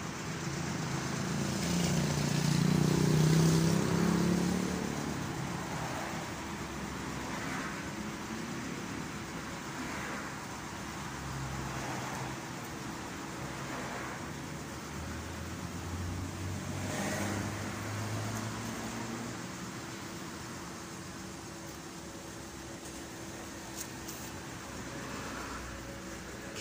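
Street traffic: vehicles passing with a low engine rumble, loudest a few seconds in, then a fainter steady hum with smaller swells as more vehicles go by.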